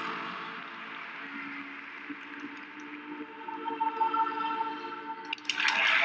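Floor-exercise music ending on long held notes over arena crowd applause. The crowd noise swells suddenly into loud cheering near the end.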